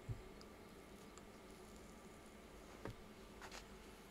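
Near silence: faint room hum with a few soft taps of a paintbrush dabbing oil paint onto paper, one right at the start and a couple near the end.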